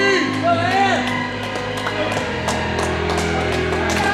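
Music with singing, playing steadily.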